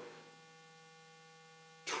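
Faint, steady electrical hum of several constant pitches during a pause in a man's speech; his voice comes back near the end.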